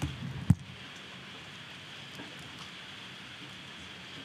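Steady rush of air from the room's ventilation system blowing, picked up through the meeting microphones, with one sharp knock about half a second in.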